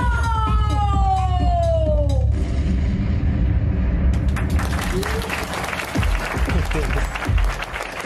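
Live concert recording of electronic J-pop: a long pitched glide falls steadily over the first two seconds above a heavy bass. From about halfway through, audience clapping and cheering rise over the music.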